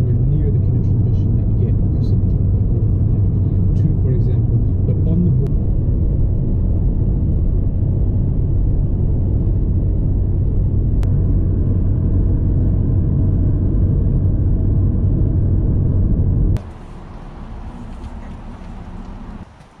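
Road noise inside a car cruising at highway speed: a loud, steady low rumble of tyres and engine with a constant hum. Near the end it cuts off suddenly to a much quieter outdoor hiss.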